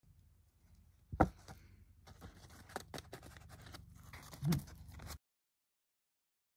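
Handling noises of a sheet of embossed card held and turned in the hands: a sharp tap about a second in, then light scrapes and small clicks, and a short low bump a little after four seconds. The sound cuts off abruptly about five seconds in.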